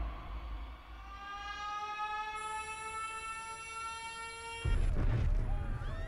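Film-trailer sound effects: a high, many-toned whine that rises slowly in pitch for a few seconds, cut off about three-quarters of the way in by a sudden loud, deep blast.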